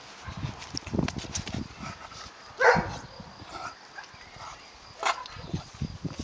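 Doberman puppies at play: one short bark about two and a half seconds in, the loudest sound, and a shorter yip near the end, among small knocks and rustling from their scuffling on the grass.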